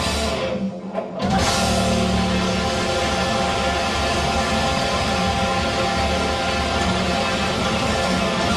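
Hard rock band playing live, with electric guitars, bass and drum kit. The band stops short just under a second in and comes back in full about a second later.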